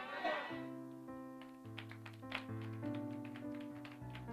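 Faint sustained keyboard chords, the held notes changing every half second or so, with a few light ticks.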